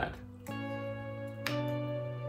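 Background music of sustained guitar chords, with a new chord struck about half a second in and another about a second later.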